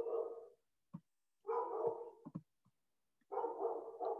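A dog barking faintly in the background: three drawn-out barks, about a second and a half apart.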